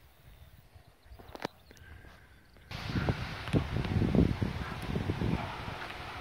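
Quiet outdoor air with a single click, then about halfway in an abrupt louder rushing of wind on the microphone with irregular low buffeting.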